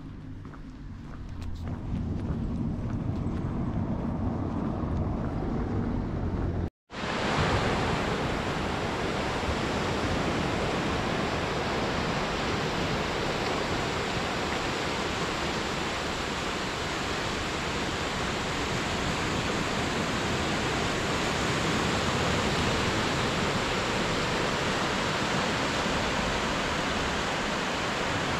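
Ocean surf washing onto a sandy beach, a steady rush of waves that starts abruptly about seven seconds in. Before it comes a lower, rumbling outdoor ambience.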